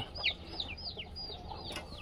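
Young chicks peeping: a run of short, high, falling peeps, about three a second.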